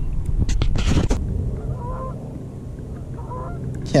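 Water splashing and dripping in the first second as a hand comes out of the water, then two short, faint honking calls of a waterbird, about a second apart.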